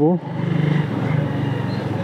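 Motorcycle engine running steadily at low speed while riding, a low even hum whose pitch drops slightly about a second in.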